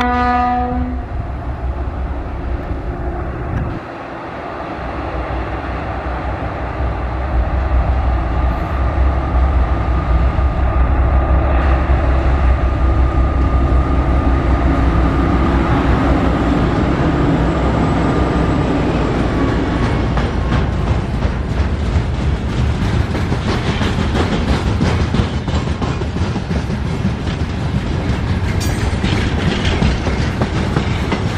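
A horn blast from two approaching ST44 (M62-family) broad-gauge diesel locomotives, cutting off about a second in. The deep rumble of their two-stroke diesel engines then builds as they pass close by. A long train of container flat wagons follows, its wheels clicking rapidly over the rail joints.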